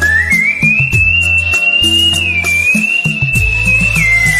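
A man whistling a song melody through pursed lips: one clear tone that glides up about half a second in and holds high, with a small dip in the middle. Behind it plays backing music with a bass line and a beat.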